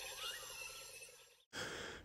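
Faint, dying tail of a logo intro jingle, with a soft rising whoosh in the first half second. It cuts to silence about a second in, and faint hiss follows near the end.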